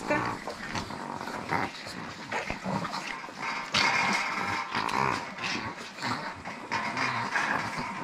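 A pack of chihuahuas making dog noises, growls among them, as they crowd around a feeding plate they have just licked empty of meat.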